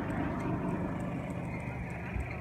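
A steady low hum, like an idling engine.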